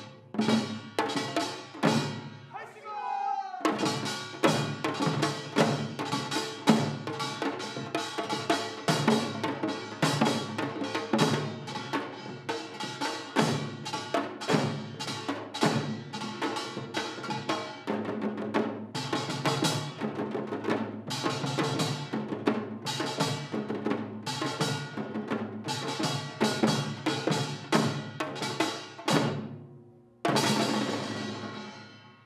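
Janggu, the Korean hourglass drum, struck with a thin stick and a mallet. A few sparse beats open, then about four seconds in it breaks into a fast, dense, driving rhythm that keeps going and stops briefly just before the end. A short sliding pitched sound comes near the start.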